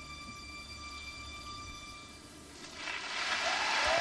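The last sustained chord of the skating program's music fades out. From about three seconds in, crowd applause swells and keeps growing louder as the dance ends.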